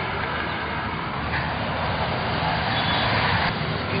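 Road traffic noise from nearby vehicles, a steady rumble that grows brighter about a second in and eases off near the end, like a vehicle passing.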